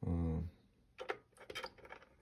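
A short spoken syllable, then a quick run of small plastic clicks and rattles as a hand handles the wiring and plugs in a red power connector to switch on the RC receiver.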